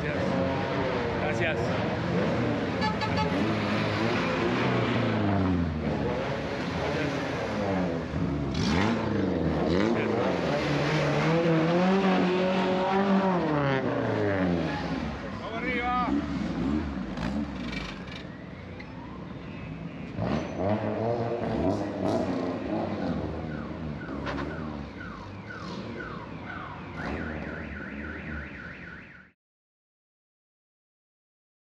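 Classic BMW 2002s with inline-four engines driving off one after another, their engine notes rising and falling over and over as they accelerate and shift gears. A brief warbling tone sounds about halfway through, and the sound cuts off abruptly near the end.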